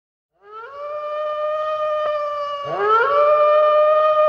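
Two overlapping wolf howls, the first starting about half a second in and the second, lower one joining about two and a half seconds in. Each rises at the start and then holds a steady pitch.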